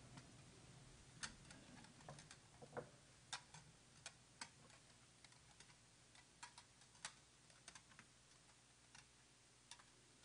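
Near silence in a large quiet hall: room tone with irregular faint clicks and taps scattered throughout.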